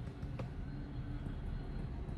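Steady low background rumble with a faint hum, and one brief faint click about half a second in.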